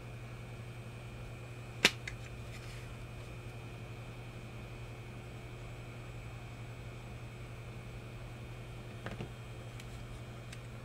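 Hot air rework station blowing at low temperature, a steady low hum with a faint high whine, while one sharp click sounds about two seconds in and a couple of faint clicks come near the end.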